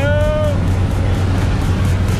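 Jump plane's engine and propeller drone heard from inside the cabin during the climb, with a short high voice in the first half second.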